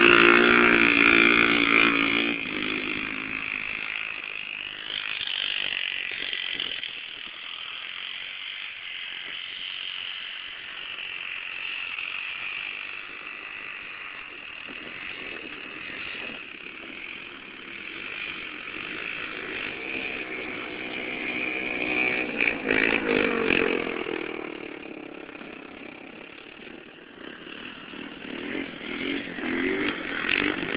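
Small quad (ATV) engines running hard on a snowy track. One passes close and loud at the start, then fades into the distance. Engine sound builds again about twenty seconds in and once more near the end as quads come back by.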